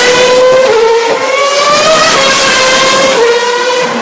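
Formula One car's 2.4-litre V8 engine at high revs, loud, its pitch climbing and then dropping at each upshift, about three times.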